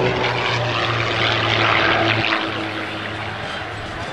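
Extra 330XS aerobatic plane's piston engine and propeller droning overhead, a steady hum with a rushing noise, easing off a little about halfway through.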